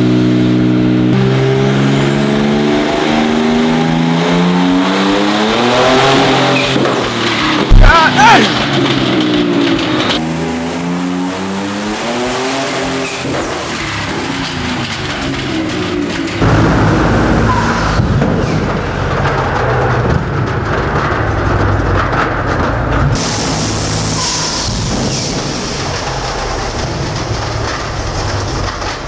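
Twin-turbo S58 straight-six of a BMW G82 M4 at full throttle on a chassis dyno, its revs climbing in long rising pulls, with a sharp bang about eight seconds in. This is the nitrous-sprayed pull in which the engine failed, throwing fire and oil. In the second half a rough, noisy rumble with no clear pitch replaces the climbing engine note.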